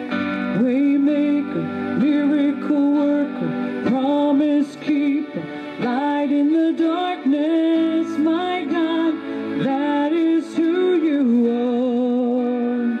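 A woman singing a slow worship chorus over sustained chords played on a Korg Triton keyboard.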